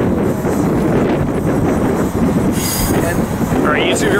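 Freight train of autorack cars rolling past with a steady, loud rumble of wheels on rail. About two and a half seconds in there is a brief high-pitched hiss.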